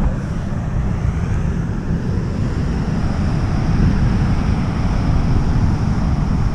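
Strong wind buffeting the microphone with a heavy, gusty low rumble, over the steady rush of rough surf breaking on a pebble beach.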